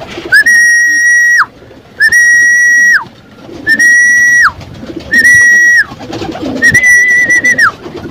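Five long whistle calls used to call racing pigeons into the loft. Each note is about a second long, rises briefly at the start, holds one steady pitch, then drops away, and they repeat about every second and a half.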